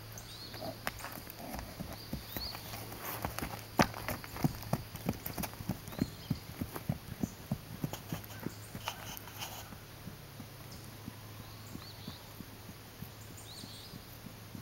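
Horse hooves striking dirt ground: a quick, even run of hoofbeats, about three a second, loudest about four seconds in and fading away by about ten seconds as the horse moves off.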